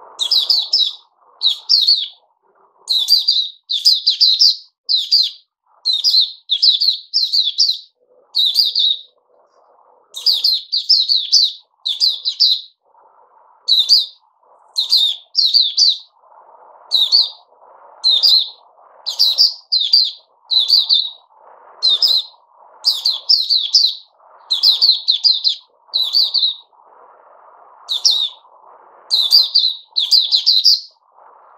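White-eye calling in its cage: short, high chirps repeated about once or twice a second, sometimes in quick pairs, with brief pauses in between.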